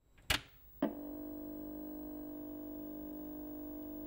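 Two sharp clicks, then a steady held electronic chord of several tones: the intro of a Vocaloid song playing on the computer.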